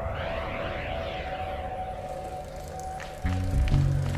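Band music: a steady held tone with a swirling sweep above it, then a low bass line of stepped notes coming in loudly about three seconds in.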